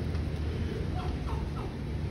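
A bird calling three short, quick falling notes about a second in, over the steady low rumble of city traffic.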